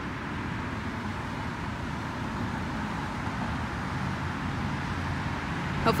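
Road traffic close by: a steady rush of passing cars on the road.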